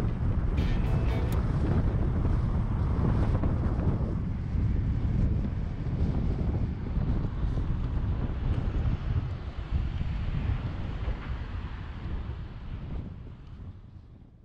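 Wind buffeting the microphone of a camera moving along a road, a dense low rumble mixed with vehicle and road noise, gradually fading out over the last few seconds.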